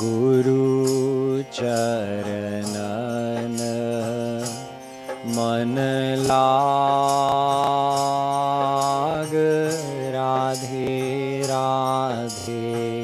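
A man singing a devotional Hindi couplet (doha) in a slow traditional style, holding long notes over a steady harmonium accompaniment. A light percussion beat ticks about twice a second beneath it.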